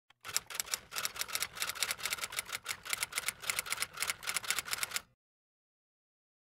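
Rapid key-typing clicks, about eight a second, laid over a title card as a typing sound effect; they stop suddenly about five seconds in.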